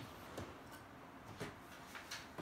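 A few faint, short clicks and light taps spread over about two seconds, over quiet room tone.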